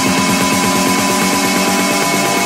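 Progressive house build-up: rapid, evenly repeating buzzy pulses under held high synth tones, thinning out near the end.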